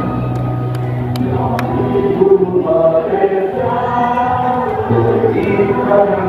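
A group of voices singing a slow song together with musical accompaniment, the notes held and changing every second or so.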